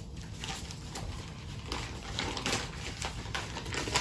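Paper envelope being opened and folded paper ballots pulled out and unfolded, heard as soft, irregular rustles and crinkles.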